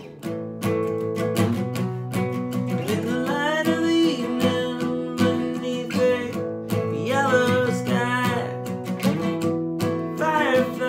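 Acoustic guitar strummed steadily, with a man singing over it in two phrases.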